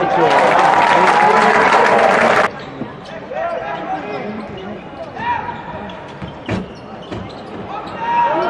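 Basketball game sound in an arena: loud crowd voices for about two and a half seconds, cut off suddenly, then quieter court sound with scattered voices, a basketball bouncing and a single sharp knock near the end.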